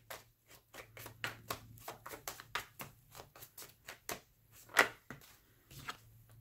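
A deck of tarot cards being shuffled by hand: a quiet, irregular run of quick card clicks and slaps, several a second, with one louder slap about two-thirds of the way through.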